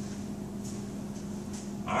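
Steady low hum of room noise with a few faint scuffs, like shoes on a rubber gym floor; a man's voice starts right at the end.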